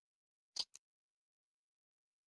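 Two quick clicks about half a second in, the second fainter, otherwise near silence.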